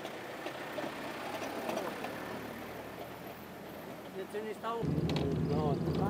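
Faint outdoor background with a few distant voices, then about five seconds in the steady low hum of a van's engine running, heard from inside the cabin, with voices over it.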